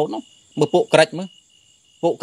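A man preaching in Khmer: the tail of one phrase, then a short burst of a few more syllables, then a pause of near silence for the last part. A faint steady high-pitched tone sits under the voice.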